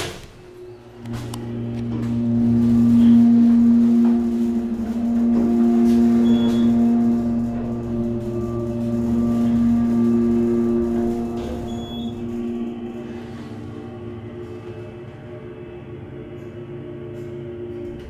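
Elevator drive machinery humming at a steady pitch as the car travels up. The hum swells in about a second in, is loudest in the first half and fades over the last several seconds.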